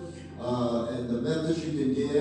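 A man's voice through a microphone, drawn out in long held syllables, starting after a short pause.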